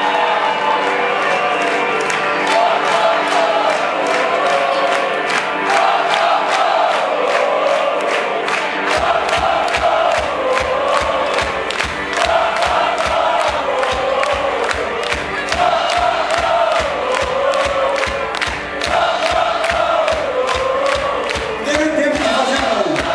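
Live rock band playing loud, with voices chanting along. About nine seconds in, the bass and kick drum come in heavily under a steady beat.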